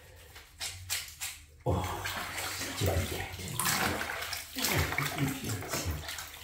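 Shallow bathwater in a bathtub splashing and sloshing as a wet washcloth is dunked and worked in it. A few small splashes at first, then continuous splashing from a little under two seconds in.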